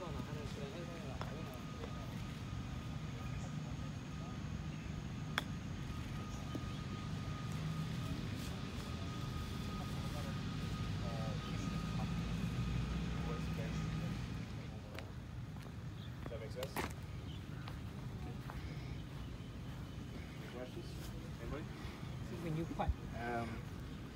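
Outdoor background of a low steady rumble with faint, indistinct chatter from people nearby. A sharp click comes about five seconds in and another about eleven seconds later.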